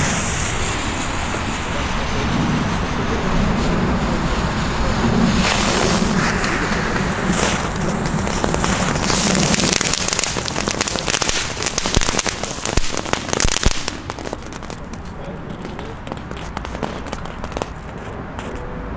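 Tank-shaped novelty ground firework burning: a steady spark-spraying hiss for about ten seconds, then a few seconds of rapid crackling pops, dying down toward the end.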